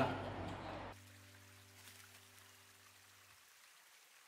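Faint trickle of a shallow stream, with a low steady hum under it that stops near the end. The first second is the tail of voices at a meal before the sound cuts away.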